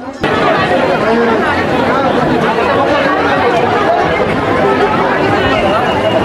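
Dense chatter of a large crowd, many voices talking over each other at once. It starts abruptly just after the start and stays steady and loud.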